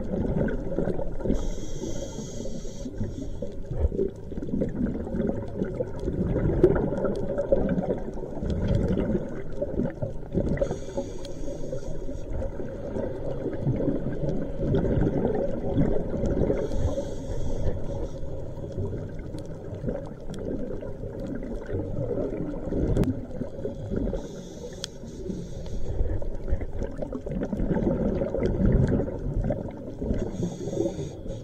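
Scuba diver breathing through a regulator, heard underwater: a short hissing inhale about every six to eight seconds, four in all, with the low rumble and gurgle of exhaled bubbles in between.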